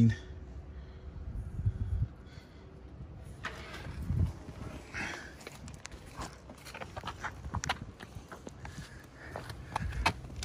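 Irregular footsteps and scuffs on asphalt with handling noise from the moving microphone.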